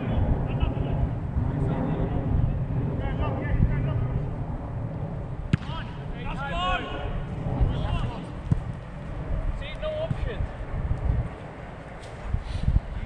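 Wind rumbling on the microphone, with distant shouts and calls from footballers at play, and one sharp knock about five and a half seconds in.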